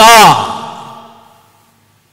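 A man's loud shouted last syllable through a handheld microphone, falling in pitch, its echo dying away over about a second and a half.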